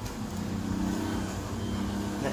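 A motor vehicle engine running at idle, a steady low hum.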